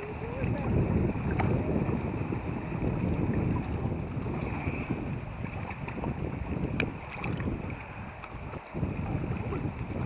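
Water sloshing and lapping right against a microphone riding at the water's surface, with heavy low rumbling buffeting that rises and falls unevenly.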